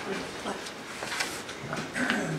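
Indistinct speech carrying through a small, echoing church hall, with a couple of short paper-like rustles or clicks.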